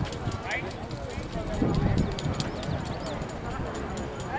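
Outdoor soccer-field sound: scattered distant shouts and calls from players and spectators over a low rumble, with many faint light clicks.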